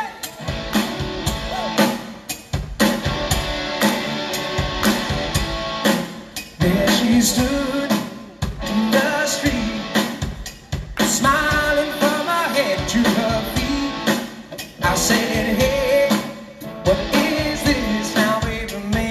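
Live rock band playing: electric guitars, bass and drum kit with a lead vocal, broken by several brief stops every few seconds.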